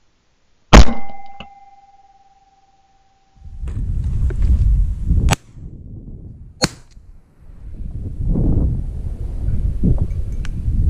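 A loud shotgun shot about a second in, followed by a clear ringing tone that fades over nearly three seconds. Then wind buffeting the microphone, with two more sharp cracks about a second and a half apart.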